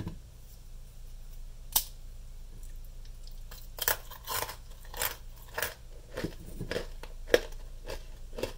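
Crisp deep-fried dough twists (ma hua) crunching: one sharp crack about two seconds in, then a run of crunches from about three and a half seconds until near the end.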